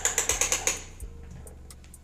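A quick, even run of small ratchet-like clicks, about ten a second, lasting under a second at the start, then only faint clicks.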